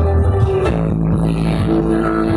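Loud music with heavy bass played through a truck-mounted stack of sound-system speakers, the held bass note changing about a third of the way in.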